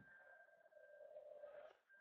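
Near silence: room tone with only a faint steady high tone.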